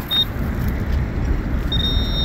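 Handheld metal-detecting pinpointer sounding a thin, high steady tone: briefly just after the start, then again near the end, as it picks up a metal target in the hole. Under it runs a steady low rumble of background noise.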